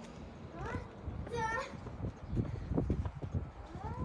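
A child's high-pitched wordless calls: short, bending squeals about a second in, again a moment later, and once more near the end, over low rumbling noise.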